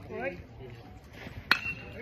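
Metal baseball bat hitting a pitched ball about one and a half seconds in: a single sharp crack with a brief metallic ping ringing after it. A short shout from a spectator comes just before it.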